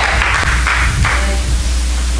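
Electric keyboard holding low sustained notes behind the sermon, with a steady hiss over them.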